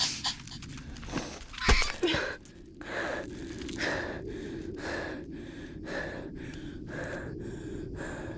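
A man breathing hard in ragged gasps, about one breath a second, over a steady low rumble. A few sharp knocks come just before the gasping starts, the loudest just under two seconds in.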